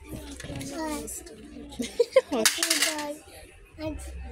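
A young child's babbling voice, with a short rustling noise about two and a half seconds in.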